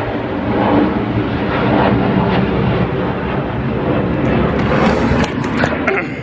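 A jet airliner flying over: a loud, steady rumble of its engines. Camera handling clicks come in near the end.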